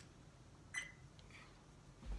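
A single short electronic beep from a small video camera a little under a second in, as its button is pressed, with a fainter blip after it; otherwise near-silent room tone.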